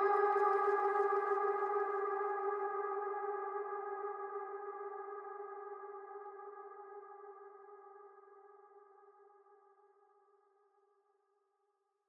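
The closing moment of a psytrance track: after the beat and bass have stopped, one held pitched note rings on alone and fades away over about eight seconds to silence.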